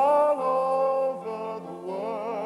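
A song: a voice sings a few long, held notes, the first one the loudest.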